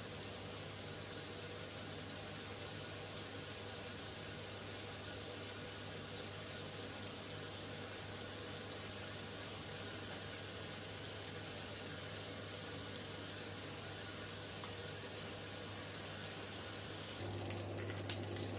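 Mackerel fillets sizzling steadily in hot oil in a non-stick frying pan, with a few light clicks near the end.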